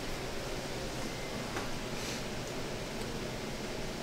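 Steady, even background hiss of a small room, with no distinct sound events.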